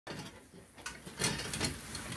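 A metal garden rake scraping over a brick oven floor and pushing a heap of pears. Several short knocks and scrapes from about a second in as the pears roll and bump together.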